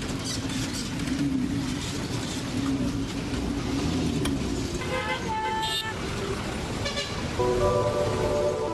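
Street traffic with engines running and a vehicle horn tooting a couple of times in the second half. Soft music comes in near the end.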